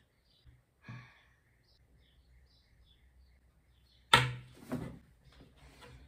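A woman breathing deeply: a loud breath about four seconds in, the loudest sound here, and a softer one just after, following a few seconds of near quiet.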